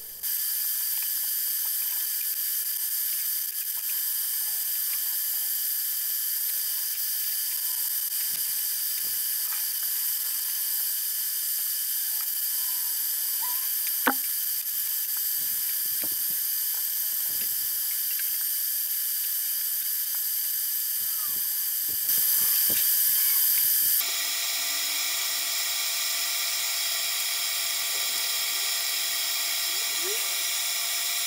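A steady hiss with a few faint clicks and knocks, one sharper tick in the middle, and a brief louder stretch of hiss about three-quarters of the way through.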